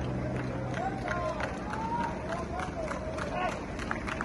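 Several people's voices calling and shouting outdoors, over a steady low hum that stops about a second and a half in.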